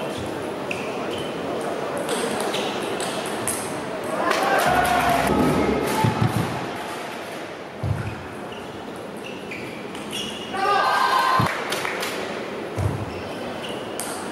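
Table tennis ball clicking sharply off bats and the table in rallies, each hit a short ping. Loud voices rise twice over the play, about four seconds in and again about ten and a half seconds in.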